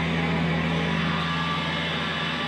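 Electric guitar and bass held through their amplifiers as a steady, noisy drone, with no drums.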